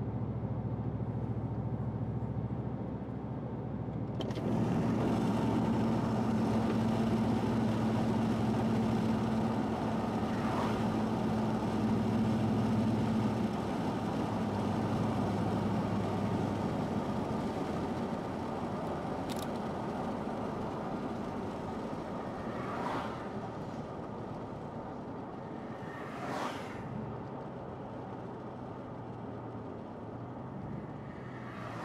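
Inside a moving car: engine hum and road noise. The sound grows louder about four seconds in as the car picks up speed and eases off after about a dozen seconds, with a few brief whooshes in the second half.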